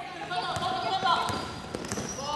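A basketball being dribbled on a wooden court floor, a few scattered bounces, during play on a fast break.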